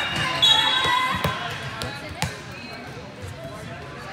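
High-pitched girls' voices calling out across a large gym, then two sharp thuds about a second apart as a volleyball bounces on the hard court floor.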